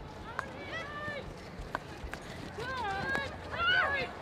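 Field hockey players shouting and calling to each other on the pitch, in high voices, loudest near the end. A sharp click of a stick striking the ball comes in between.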